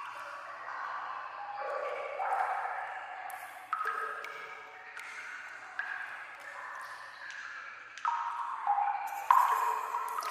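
Water drops falling in a sewer, each landing with a sudden pitched plink that rings on and fades, one every second or two.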